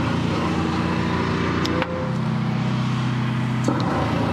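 Drain jetter's engine running steadily while the high-pressure jetting hose works up a blocked pipe. Its note breaks off briefly about two seconds in and then picks up again.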